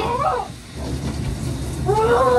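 A young man's wordless whining yell, its pitch bending up and down, in the first half second, and another starting near the end, over a steady low hum. They are angry cries of frustration.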